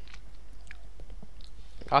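A pause between words: a steady low electrical hum on the recording, with a few faint short clicks.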